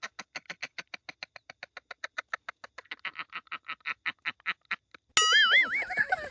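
Comedy sound effect: a fast, even run of short quack-like pulses, about seven a second, lasting about five seconds. Near the end it gives way to a louder wobbling, whistle-like tone that rises and falls in pitch.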